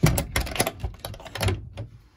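A quick run of clicks and knocks from a wooden panel and its small brass turn-button catch being handled, the first knock the loudest.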